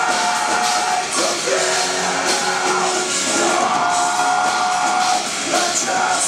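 A melodic death metal band playing live, with distorted guitars, bass and drums. Over them runs a slow melody of long held notes that change pitch every second or two.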